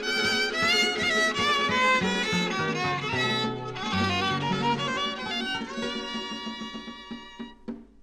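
Instrumental close of a Michoacán son: a violin melody over a bass line, ending on a held final chord that stops about seven and a half seconds in.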